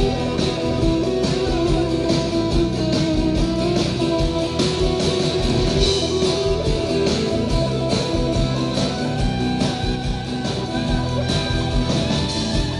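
Live rock band playing an instrumental passage led by amplified acoustic guitars, over a steady beat, with no singing.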